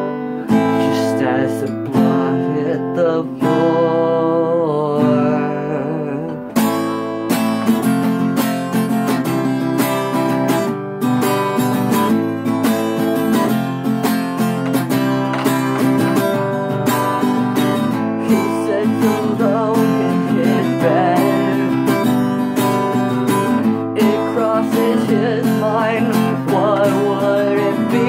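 Acoustic guitar playing an instrumental passage: lighter playing for the first several seconds, then steady strumming from about seven seconds in.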